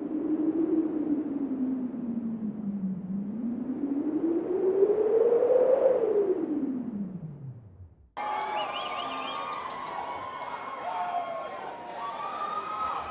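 A hissing, electronic-sounding drone that glides up and down in pitch, swells, then sinks and fades out about eight seconds in. It is cut off abruptly by a busy background of many short chirping, pitched sounds.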